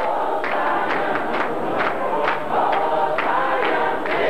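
A large choir and congregation singing a gospel hymn together, many voices holding sustained harmony, over a sharp percussive beat about twice a second.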